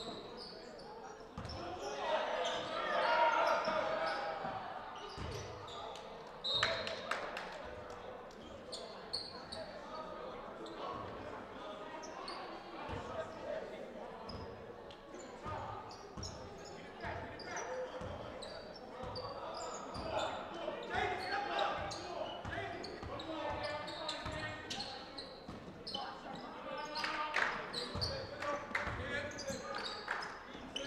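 Basketball bouncing on a hardwood gym floor, the bounces echoing in a large gym, with players and spectators calling out.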